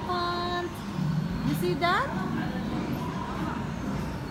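Voices without clear words: a held vocal note for about half a second, then a short rising call about two seconds in, over a low murmur of other voices.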